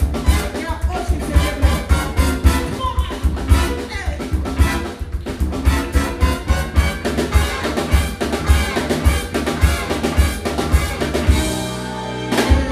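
A live jazz band with saxophones, trumpets, electric guitars and drum kit playing an up-tempo number over a steady drum beat. Near the end the band moves onto a held chord.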